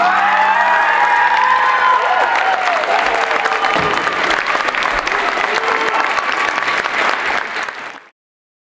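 Audience applauding at the end of a drumline performance, with whoops rising and falling over the clapping; the sound cuts off suddenly at the very end.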